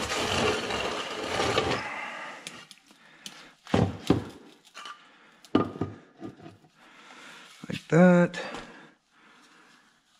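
Wooden boards set down across a plastic drain tub, giving a few sharp knocks, after a rushing noise that stops about two seconds in.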